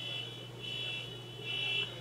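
A steady high-pitched electronic buzzing tone, unchanging in pitch, that swells louder twice over a low steady hum.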